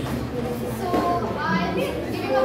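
Indistinct talking: several voices chattering at once, with no words clear.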